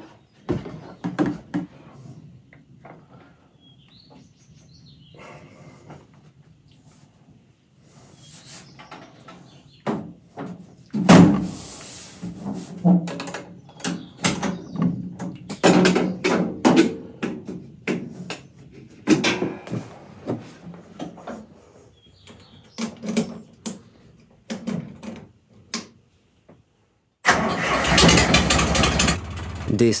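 A 1960s Lamborghini crawler tractor's engine being started: a loud catch about a third of the way in, then irregular, uneven firing that comes and goes. Near the end the engine runs loudly and steadily.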